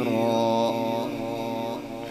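A male qari reciting the Quran in melodic tajweed style, amplified through a microphone, holding one long steady note. The note weakens near the end and trails away.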